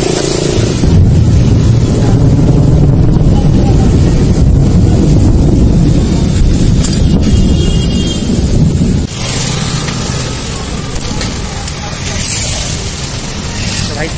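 Wind buffeting the microphone of a moving motorcycle, mixed with road noise from tyres on a wet street. Loud and low for about nine seconds, then it drops suddenly to a lower level.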